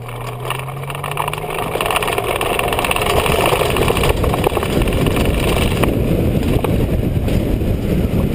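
Tow plane's engine at full power pulling a hang glider down the runway on aerotow. Its steady note rises slightly, then is covered by a rushing noise that grows louder as the glider picks up speed.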